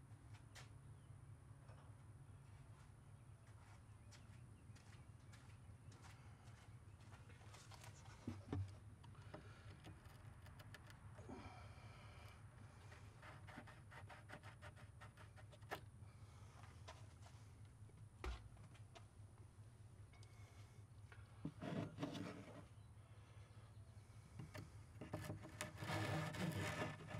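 Near silence over a low steady hum, broken by scattered clicks and a few short scrapes of a metal hex key working a bolt set in a plywood cabinet corner. The scraping comes in brief bursts, more often near the end.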